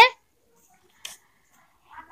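A woman's voice ends a word, then a pause of near silence in the narration, broken only by one faint, brief sound about a second in.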